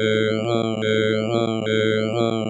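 Microsoft Sam text-to-speech voice droning a long run of repeated letters on one flat robotic pitch. The same gliding vowel sound repeats a little more than once a second.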